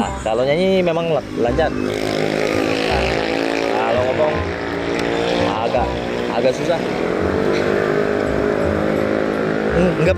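A man's voice stutters out sung words for the first second or so; then a vehicle engine runs steadily close by, a constant low hum under brief bits of voice.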